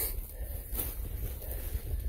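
Wind rumbling on the phone's microphone while footsteps brush through forest undergrowth, with a couple of faint crunches.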